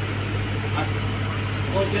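Steady low hum from running machinery under faint voices talking.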